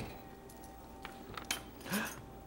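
Light clicks from a plastic whipped-topping tub and kitchen utensils being handled, one at the start and another about a second and a half in, over quiet room tone with a faint steady hum.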